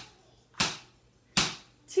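Wooden drumsticks struck down against the floor in time with squats: sharp knocks about 0.8 s apart, two of them plus the fading end of one at the start.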